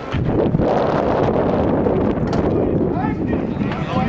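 Wind buffeting the microphone in a steady rumble, with people's voices talking in the background, clearest near the end.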